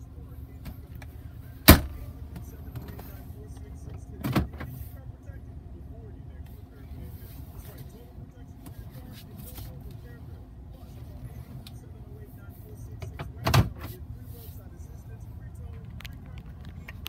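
Pickup truck engine idling steadily, heard inside the cab. Over it come three sharp clunks: a loud one about two seconds in, a softer one about four seconds in, and another near the end.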